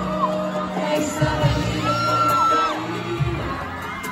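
Live acoustic pop performance: a male singer with acoustic guitar accompaniment, and whoops from the audience in the hall.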